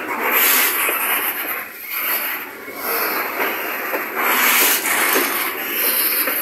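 Covered hopper freight cars rolling past close by: loud, rough noise of steel wheels on rail that rises and falls as the cars go by.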